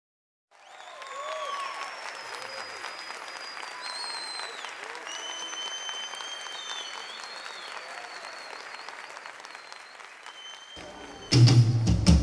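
Audience applauding and cheering, with several long, high whistles over the clapping. About a second before the end, a live band comes in loudly.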